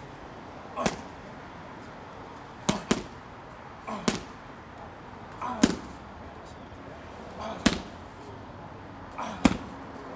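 Gloved punches and knee strikes landing on padded GroupX kick pads held by a trainer. There are seven sharp hits about every one and a half to two seconds, some coming as quick double hits.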